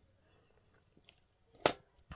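Faint handling of small paper pieces, then one sharp click about one and a half seconds in as metal tweezers are set down on a cutting mat.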